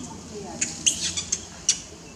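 Newborn macaque squeaking and crying in short, high-pitched bursts, about five in under two seconds.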